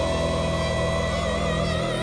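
Symphonic metal music: a female operatic soprano holds one long high note, steady at first and then with vibrato from about a second and a half in, over sustained keyboard and band backing.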